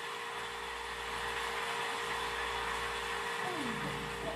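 Steady background hiss with a faint constant hum tone under it, and no music or voices.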